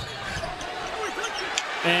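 Game sound of a televised basketball game in a large arena: a steady crowd hubbub with a few faint wavering calls, then a commentator's voice comes in near the end.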